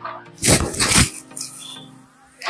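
Rustle of a semi-silk dress fabric being lifted and held up against the body, one loud swish lasting about half a second, with faint background music underneath.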